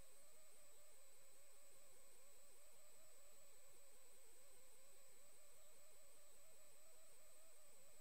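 Near silence: a faint steady hiss with a thin, constant high-pitched tone and a faint low hum.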